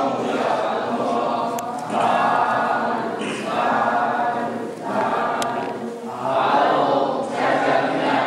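A group of voices chanting Buddhist prayers together in unison, in phrases a second or two long with short pauses between.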